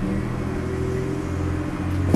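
Road traffic coming in through an open door: a vehicle engine running with a steady low rumble and hum, loud enough to interrupt speech.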